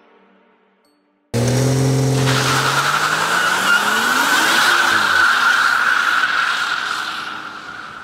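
A car doing a burnout: the engine cuts in suddenly and revs up with a rising note as the rear wheel spins in smoke, and a loud, steady tyre squeal sets in about two seconds in, fading near the end.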